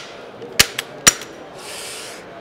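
Sharp clicks and clacks of a Standard Manufacturing DP-12 pump shotgun being handled and turned over: three quick knocks in the first half, then a short hiss near the end.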